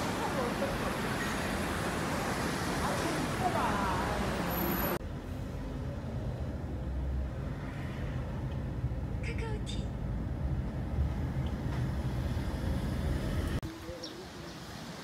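Street traffic noise with a voice humming or singing faintly. About five seconds in it cuts to the low rumble of riding inside a moving vehicle, which lasts until near the end.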